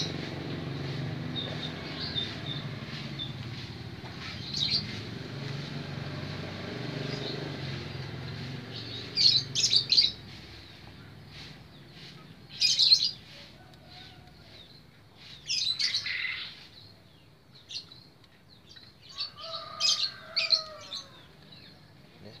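Small birds chirping in short scattered bursts, over a low steady hum that fades out about halfway through.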